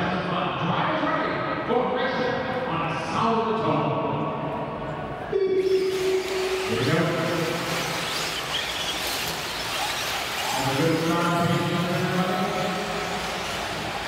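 A race announcer's voice over the public-address system, echoing in a large indoor hall, with the arena's background noise behind it. The background turns suddenly louder and brighter about five seconds in.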